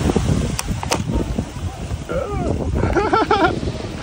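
Wind noise on the microphone, with a person's voice calling out or laughing from about two seconds in.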